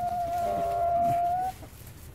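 A hen perched close by gives one long, steady, even-pitched call that stops about a second and a half in.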